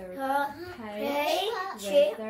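Young girls' voices reciting lines of a picture-book story in English, in a drawn-out, sing-song way.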